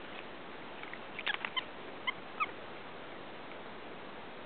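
Capuchin monkeys: a few quick clicks, then two short high squeaks about a third of a second apart, over a steady hiss.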